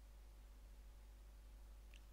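Near silence: faint steady low room hum, with one faint brief high sound just before the end.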